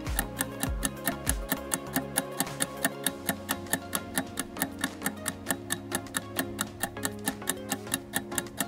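Clock-tick sound effect for an 8-second quiz countdown timer: fast, evenly spaced ticks over a background music bed.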